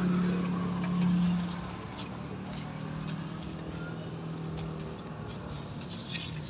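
A steady low motor hum that starts suddenly, is loudest for the first second and a half, then carries on more quietly until about five seconds in, with a few faint clicks over it.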